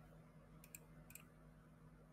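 Near silence: a low steady hum of room tone with two faint pairs of short, sharp clicks, about half a second apart, within the first second or so.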